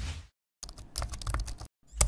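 Keyboard-typing sound effect: a quick run of key clicks as text is typed into a search bar, followed by a louder thump near the end.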